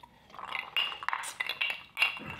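Ice cubes clinking in glass tumblers of whisky as they are tipped and sipped from, a run of small glassy knocks and rings starting about half a second in.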